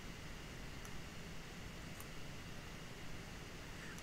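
Steady faint hiss of room tone and recording noise, with two faint short high ticks about one and two seconds in.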